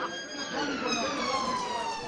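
An emergency-vehicle siren wailing, one long tone slowly falling in pitch.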